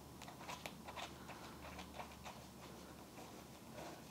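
Faint, irregular small clicks and fabric rustling as fingers thread the nut onto the bolt of a toy's 45 mm neck joint inside a stuffed fabric body, before it is finger-tightened.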